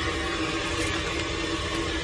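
Steady hum and hiss with one faint steady tone running through it.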